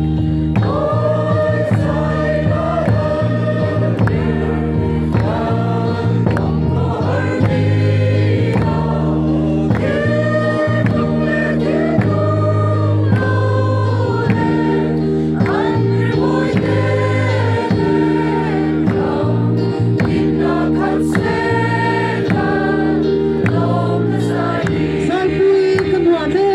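A large group of women and men singing a Mizo mourning hymn (khawhar zai) together, one continuous sung melody over steady held low notes.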